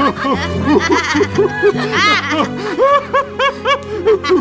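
A voice laughing in a quick run of repeated 'ha-ha' syllables, over background music with held chords.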